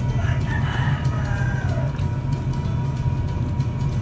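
A rooster crowing once, a drawn-out call that falls in pitch near its end, over a steady low hum.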